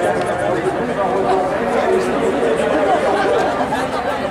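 Several people talking at once close by: steady crowd chatter with overlapping voices.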